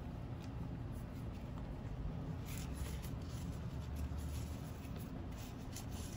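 Faint rustling and rubbing of grosgrain ribbon being handled and pinched into a bow loop, over a low steady room hum.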